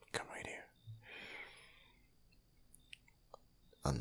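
A man's close-miked breathy vocal sounds, no clear words: a quick sharp breath, then a longer whispered exhale, then a few soft mouth clicks.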